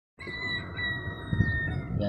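A steady high-pitched tone with a fainter overtone, held for about a second and a half and dropping slightly in pitch at its end, over a low continuous rumble.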